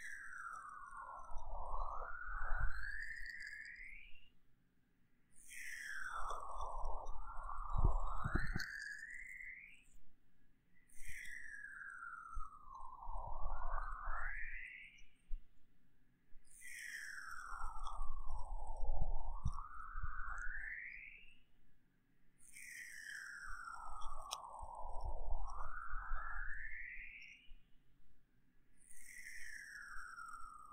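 Lotion-covered hands massaging a binaural dummy-head microphone's ears in slow repeated strokes, about one every six seconds. Each stroke is a swish that falls in pitch and then rises again as the hands pass over the ear.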